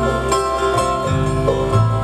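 Live bluegrass band playing a slow waltz between sung lines: banjo and acoustic guitars with a section of fiddles, a held note on top and the bass notes changing underneath.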